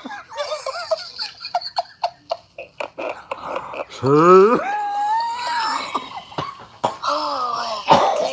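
A person laughing hard in short gasps, then a long drawn-out 'oh' about four seconds in.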